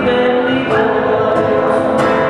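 A man singing live into a microphone with acoustic guitar accompaniment, holding long sustained notes and moving to a new note about two-thirds of a second in.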